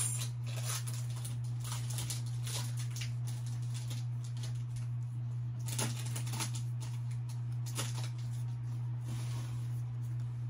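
Pokémon trading cards being handled, with soft scattered rustles and light clicks, over a steady low hum.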